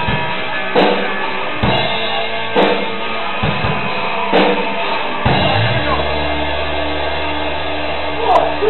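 A live rock band playing, with the drum kit striking an accent roughly once a second over electric guitars and bass. About five and a half seconds in, the drums drop away and the band holds one sustained low chord.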